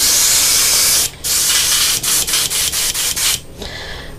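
Airbrush spraying paint in two bursts, the first about a second long and the second about two seconds, cutting off shortly before the end.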